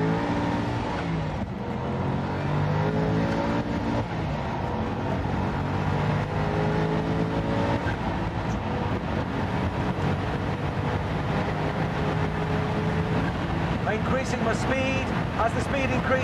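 Supercar engine running hard at high speed under full throttle, heard from inside the cabin, its note climbing slowly and then holding steady. Speech comes in near the end.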